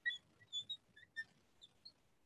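Marker squeaking on the glass of a lightboard as a word is written: about six faint, brief, high-pitched squeaks.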